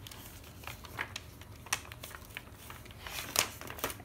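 Paper rustling and crinkling as a page of a thick, heavily decorated journal is turned by hand, with scattered soft clicks and taps. The loudest crackle comes about three and a half seconds in.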